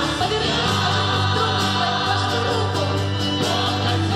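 A choir singing a Christian worship song with band accompaniment, steady and full throughout.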